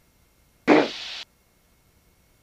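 A short burst of rushing noise over the aircraft's headset intercom, about half a second long: it starts sharply, loudest at the onset, settles to a steady hiss and cuts off abruptly.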